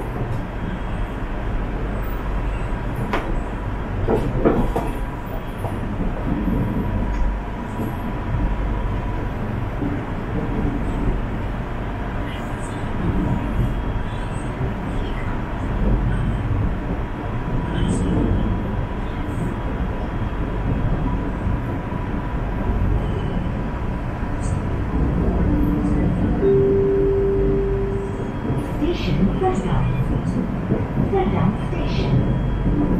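Running noise inside a KTM Class 92 electric multiple unit in motion: a steady low rumble of wheels on the rails, with a steady high tone and occasional clicks. A short low tone sounds near the end.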